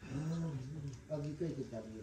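A man's voice reciting a text aloud in a steady, chant-like tone, in two phrases with a short break about a second in.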